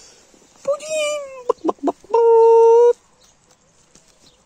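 Domestic hen calling while being hand-fed watercress: a drawn-out call that sinks a little in pitch, a few short clucks, then a longer, louder call held on one even note.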